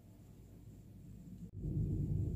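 Faint room tone, then an abrupt cut about one and a half seconds in to a louder, steady low rumble with no speech.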